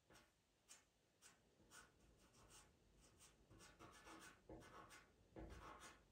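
Faint scratching of a pastel pencil on textured pastel paper: short strokes repeating roughly twice a second as fur is drawn in.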